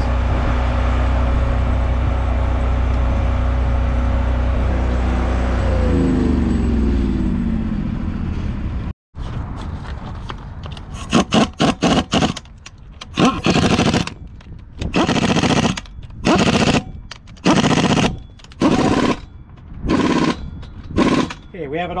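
Impact wrench run in about ten short bursts, driving the retainer bolts into a Cat 740 rock truck's wheel hub to pull the wheel up against its shims. Before that, a steady low machine drone winds down in pitch and fades out.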